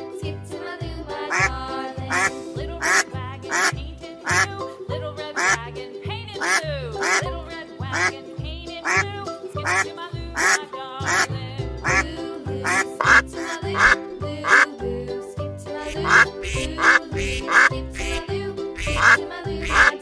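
Ducks quacking over and over, in short separate calls, over background music with a steady bass beat.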